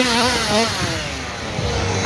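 Small two-stroke petrol engines of large-scale RC cars racing, their revs rising and falling in pitch as the cars speed up and ease off.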